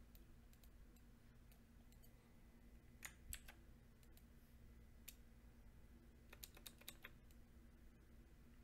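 Near silence: a low steady room hum with scattered faint clicks, a couple about three seconds in and a quick run of about six near the end.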